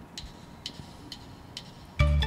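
A drummer's count-in: four faint, sharp clicks of drumsticks, evenly spaced about half a second apart.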